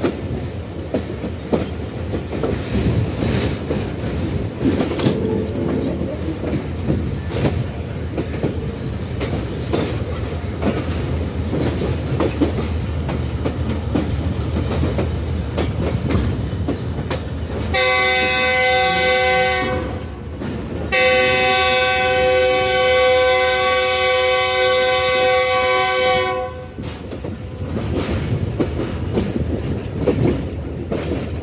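Train running, a steady rumble with the clickety-clack of wheels over rail joints. About eighteen seconds in, a diesel locomotive's multi-tone air horn sounds a blast of about two seconds, then, after a short break, a longer blast of about five seconds.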